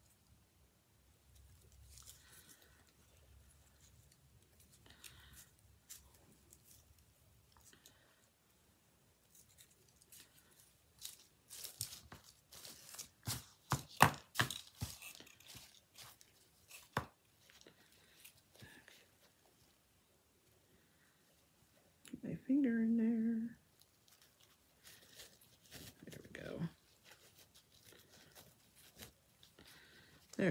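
Satin ribbon rustling and crinkling as hands pull and shape the loops of a bow, with a cluster of sharp crinkles and clicks in the middle. Later comes a brief hum-like vocal sound.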